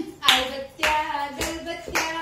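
Hand claps keeping a steady beat, four claps about half a second apart, over a voice singing a tune.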